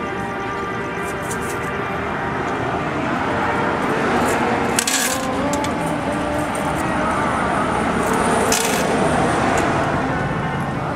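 Background music. About five seconds in and again near the end, coins spill into a payphone's coin return with a brief jingle.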